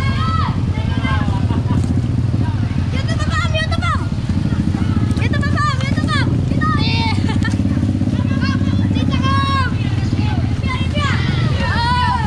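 A vehicle's engine and road noise running steadily under people's voices calling out at intervals.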